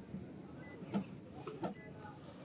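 Two soft clicks about a second apart as a hand works the tailgate release and latch of a Toyota Harrier.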